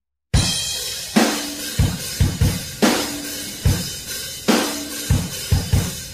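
A short silence, then a drum kit starts about a third of a second in, playing an unaccompanied rock beat of kick, snare, hi-hat and cymbal as the intro to a song.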